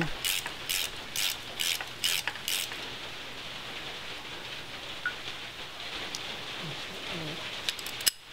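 Ratchet wrench clicking in a steady run of strokes, about two a second, as a castle nut is backed off a steering knuckle's ball joint stud. The clicking stops about two and a half seconds in, leaving only a faint steady hiss.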